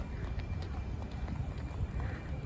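Footsteps of people walking on a rubberised running track, picked up by a handheld phone that is moving with them, over a steady low rumble on the microphone.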